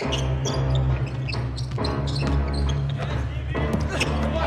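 Arena music with a steady heavy bass plays over the public-address system. A basketball is dribbled on the hardwood court under it.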